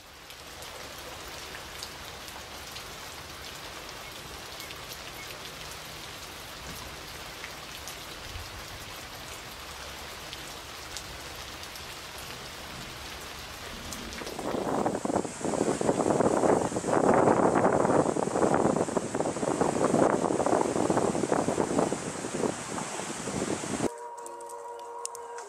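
Steady rain hiss with fine patter. About halfway through it gives way to a much louder, dense crackling patter, which stops abruptly at the end.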